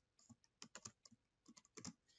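Computer keyboard being typed on: a quick, irregular run of about a dozen faint key clicks.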